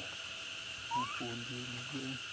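A steady high insect drone in forest, with a short rising whistle about a second in, then a low hooting note held for about a second.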